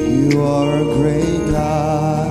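Live gospel praise music: a man sings a sliding, drawn-out vocal line into a microphone over held keyboard chords.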